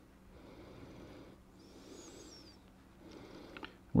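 Quiet room tone with soft breath-like noise and a low steady hum. A few light clicks near the end come from hands starting a small metal eye screw into the end of a wooden whistle.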